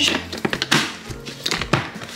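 Background music with a steady low bass line, broken by several light knocks and taps spread through the two seconds.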